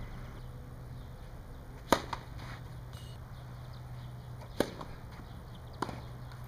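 Three sharp tennis ball impacts, about two seconds in, about four and a half seconds in and near the end, the first the loudest, over a steady low hum.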